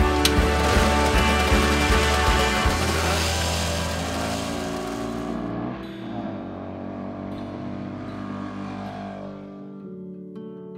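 Motorcycle engine running as the bike rides off, loudest in the first few seconds and then fading away over the second half, under background music.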